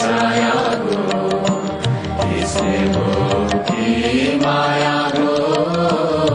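A choir of men's and women's voices singing a slow melody together, with long held notes that glide between pitches.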